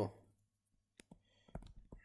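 Stylus tapping on a tablet screen while writing digits: a faint click about a second in, then a quick cluster of small clicks near the end.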